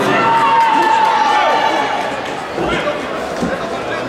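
Spectators chattering in a large sports hall. A long, held, high call rises above the voices and falls away about a second and a half in, and there is a dull thump near the end.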